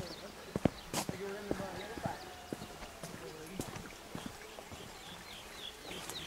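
Footsteps on a dirt trail through brush, an irregular series of sharp crunches and snaps. Near the end comes a quick run of short, high chirps.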